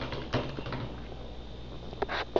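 Handheld stick blender running down in a pitcher of lye and oils, a steady low motor hum with the mixture churning, with one brief louder knock or splash about a third of a second in. The blender is emulsifying the soap batter toward an opaque trace.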